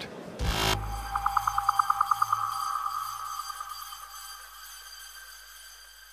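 Short electronic outro sting: a sharp hit, then a sustained synthesized tone with a rapid pulsing flutter that fades out over several seconds.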